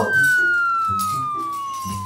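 A single steady tone that glides slowly and evenly down in pitch, an edited slow-down sound effect.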